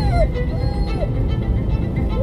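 Steady road and engine rumble inside a moving car, with soft background music and a couple of short, high, sliding whines.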